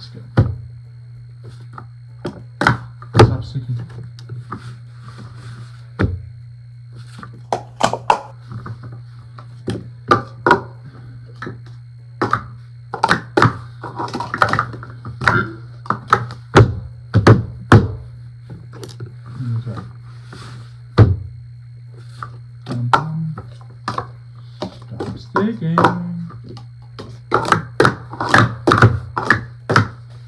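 Purple Speed Stacks plastic sport-stacking cups clacking and knocking in quick clusters as they are rapidly stacked up into pyramids and slid back down on a stack mat during a timed cycle run.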